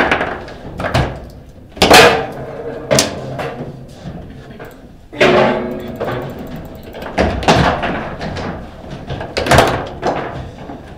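Foosball table in fast play: hard plastic ball struck by the figures and rods knocking against the table, a series of sharp knocks about a second apart. One loud hit about five seconds in leaves a short ringing tone.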